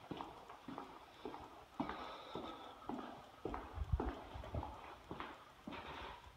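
Footsteps of a person walking on hardwood floors, a steady series of knocks about two a second, with heavier low thumps in the second half.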